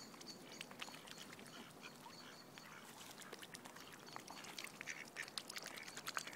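Mute swans feeding at close range: faint, quick clicking and nibbling of their bills at food on the ground, with soft calls, getting busier in the last second or two.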